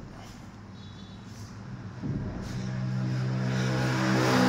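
An engine's steady hum sets in about halfway through and grows louder.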